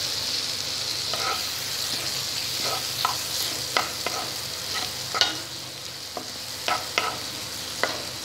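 Radish strips and vegetables sizzling in hot oil in a pan, a steady frying hiss, while a spatula stirs them. From about three seconds in, the spatula knocks and scrapes against the pan several times.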